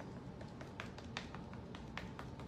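Paint dauber dabbing paint through a stencil onto a surfboard: a run of light, irregular taps, a few a second.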